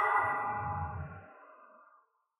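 Fading tail of a dramatic ringing sound-effect stinger: a few steady ringing tones over a low rumble, dying away about a second in.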